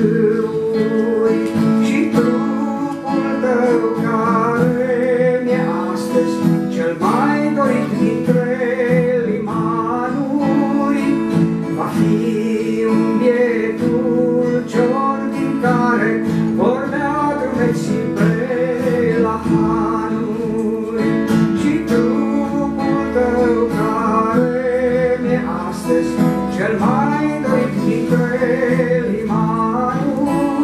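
A man singing a song, accompanying himself on an acoustic guitar with sustained chords under a voice that rises and falls phrase by phrase.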